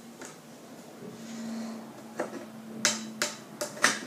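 Several sharp plastic clicks in the second half, about five in under two seconds, as fingers work at the flip-top cap of a chocolate syrup squeeze bottle to open it. A faint steady hum sits underneath.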